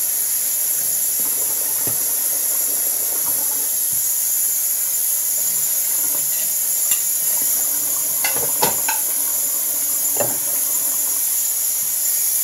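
Kitchen tap running steadily while dishes are washed, a continuous hiss of water, with a few sharp knocks of dishes being handled about two-thirds of the way through.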